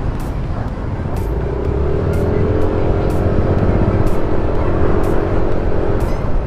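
Yamaha Aerox 155 scooter's single-cylinder engine heard while riding, over wind and road rumble. About a second and a half in, its note rises slowly as the scooter picks up speed, then holds steady.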